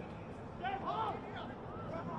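Distant shouted calls from Australian rules football players on the ground, a few brief cries about half a second to a second in and again near the end, over the steady open-air hiss of an almost empty stadium.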